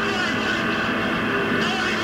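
Live power electronics noise: a dense, steady wall of distorted drone, with many sustained tones layered over harsh hiss, holding one loudness throughout.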